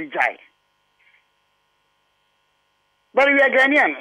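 A man speaking briefly, then about two and a half seconds of near silence with only a faint steady hum, before the speech resumes near the end.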